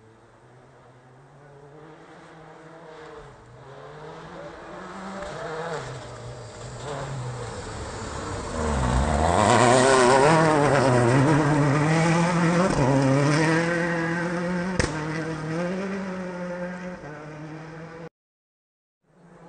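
A turbocharged World Rally Car engine approaches on a gravel stage, getting steadily louder. Its revs drop as it brakes into the hairpin about nine seconds in. It then revs up and down through gear changes as it slides out and drives away, with a single sharp crack about fifteen seconds in before it fades.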